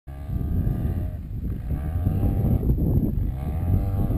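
Off-road vehicle's engine running under a heavy low rumble as it climbs a rough dirt road, its pitch rising and falling again and again as the throttle works.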